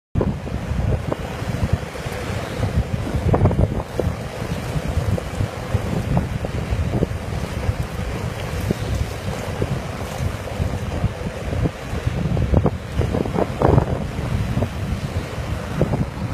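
Strong wind buffeting the microphone in uneven gusts, a loud low rumble, over a faint steady hum.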